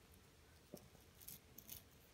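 Faint clicks from the preload adjuster knob on a mountain bike's suspension fork being turned by hand, about three small clicks in the second half.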